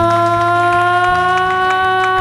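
A woman's singing voice holding one long sustained note that drifts slowly upward in pitch, over acoustic guitar accompaniment.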